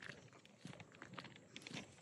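Near silence, with a few faint crunching footsteps on gravel and grass.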